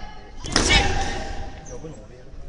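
A competitor's loud shouted kiai with a sudden start about half a second in, lasting just under a second, as a sports chanbara soft sword is swung in a basic strike.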